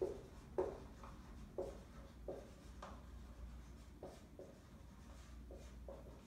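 Dry-erase marker writing on a whiteboard: a faint series of short strokes at uneven intervals as a few words are written.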